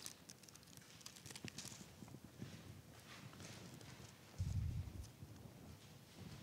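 Faint rustle and flick of thin Bible pages being turned, in light scattered clicks. A louder low thump comes about four and a half seconds in.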